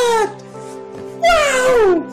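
Comedy sound effect of two long cries, each sliding down in pitch, about a second and a half apart, over background music with steady held notes.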